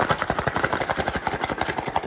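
Sauce-coated chicken wings shaken hard inside a closed cardboard takeout box: a fast, even run of thuds and rattles against the cardboard that stops suddenly at the end.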